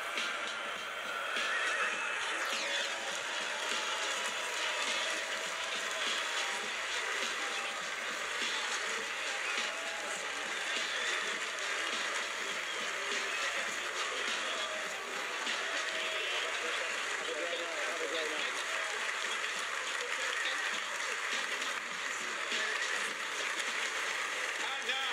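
Crowd applauding and cheering steadily, with shouts and whoops, over walk-on music.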